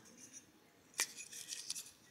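Hands handling a small round gift: a single sharp click about a second in, then light scraping and rustling as it is turned over.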